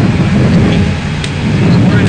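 Steady low roar of a furnished room fire burning freely, with a couple of faint crackles.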